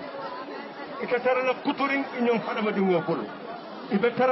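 Speech only: people talking with indistinct chatter around them, and one voice speaking for a couple of seconds in the middle.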